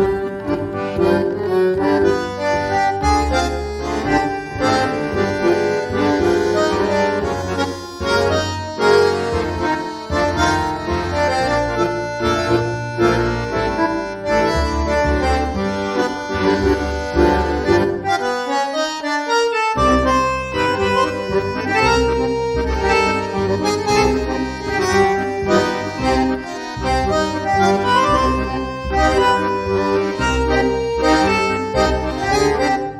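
Tango music led by a bandoneon over a rhythmic bass accompaniment. A little past halfway the bass drops out for a second or two while the bandoneon line carries on, then the full accompaniment comes back in.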